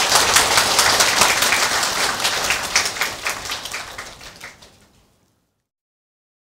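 Audience applauding, many hands clapping in a dense patter that fades out about four to five seconds in.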